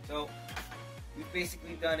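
Upbeat electronic background music with a steady bass line and beat, under a man's speech.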